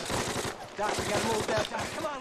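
Battle gunfire from a war-drama soundtrack: rapid machine-gun and rifle fire, with a man shouting over it.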